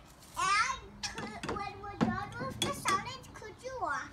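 Young children talking in short, indistinct phrases.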